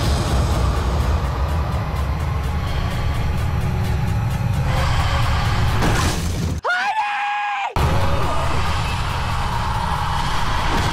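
Loud, dense horror-trailer score and sound design with a heavy low end. About six and a half seconds in it cuts out abruptly for about a second, leaving a single high-pitched shriek that rises and then holds, before the loud score comes back in.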